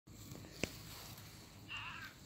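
Tabby cat giving one short meow near the end, after a single sharp click a little over half a second in.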